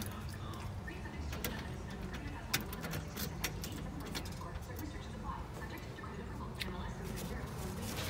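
A few faint clicks and handling noises as the car's ignition key is turned to power the stereo, over a low steady hum.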